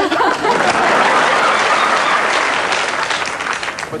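Studio audience applauding, the clapping slowly dying down toward the end.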